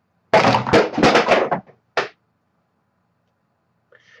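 A man's loud, breathy vocal outburst without words, lasting about a second, followed by a short breath about a second later.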